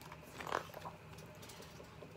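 A picture-book page being turned by hand: a brief paper swish about half a second in, with a few small clicks and rustles.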